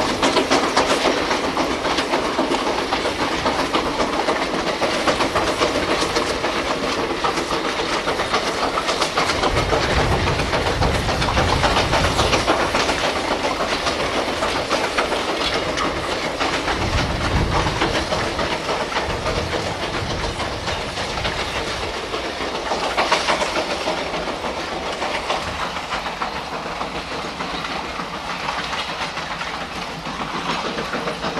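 Steam locomotive working hard as it hauls a long train of loaded sugar-cane wagons: a rapid run of exhaust beats over the rattle and clatter of the wagons on the track, with a deep rumble swelling twice around the middle.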